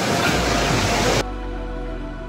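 Loud, dense café ambience that cuts off abruptly about a second in, leaving soft background music of steady held notes.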